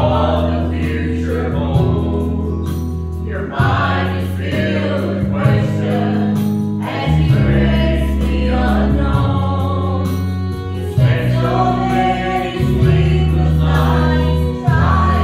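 A small church choir of men's and women's voices singing a gospel hymn together over instrumental accompaniment, with low bass notes held and changed every couple of seconds.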